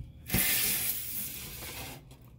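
A single knock, then a loud hiss that sets in at once and slowly fades over about a second and a half.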